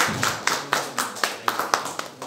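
Hands clapping in a steady rhythm of about four claps a second, fading out near the end.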